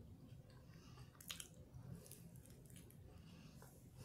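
Faint chewing with a few soft, wet mouth clicks.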